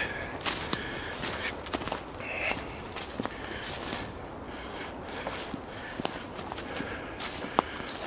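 Footsteps of a person walking over dry grass, moss and leaf litter: an uneven run of short rustling steps.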